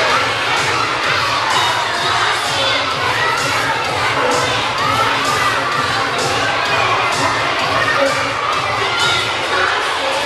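A crowd of children shouting and cheering together, a dense mass of many voices, over a steady beat about twice a second.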